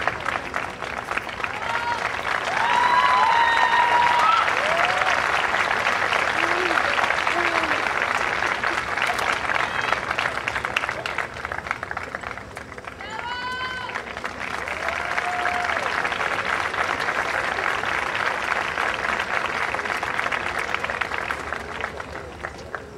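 Audience applauding at the curtain call, with scattered shouts and cheers over the clapping. The applause dips briefly about two-thirds of the way through, then swells again.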